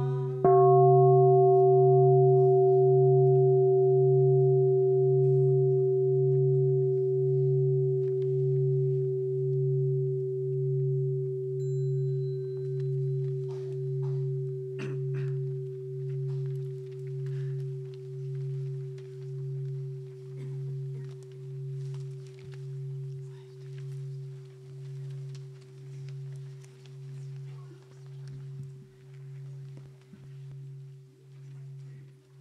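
A large bowl bell struck once just as a chant's last voices stop, then ringing on, a deep hum under a higher tone, with a slow even wobble in loudness, fading gradually. Faint rustling and small knocks of people moving are heard in the second half.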